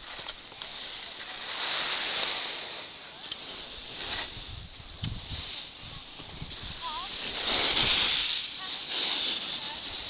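Skis hissing and scraping over groomed snow, with wind on the camera microphone. The hiss swells and fades several times.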